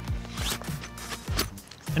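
A padded laptop case being slid into a sling bag's zippered back pocket: fabric scraping and rustling, under steady background music.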